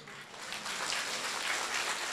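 An audience of many people applauding, the clapping swelling gradually from a quiet start.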